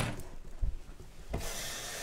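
Spatula scraping down the sides of a stainless steel stand-mixer bowl, quiet rubbing with a light knock about a second and a half in.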